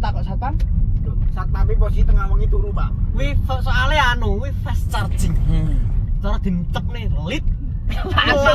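Steady low rumble of a car driving, heard inside the cabin, under men's voices talking and laughing.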